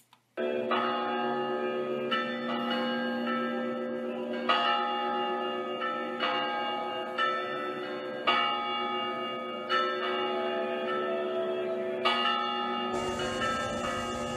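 Church bells ringing, a new strike about every second and a quarter, each ringing on under the next. The bells start abruptly about half a second in.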